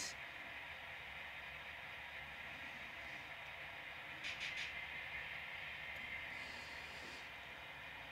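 Low, steady background hiss, with faint, brief rustling or scraping about four seconds in and again a little after six seconds.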